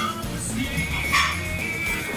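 Background music with a steady low bass line, and a short high-pitched sound that holds one tone, starting about a second in.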